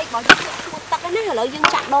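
Metal spatula knocking and scraping against a large wok while stirring sausages, with a sharp clack about a third of a second in and another near the end.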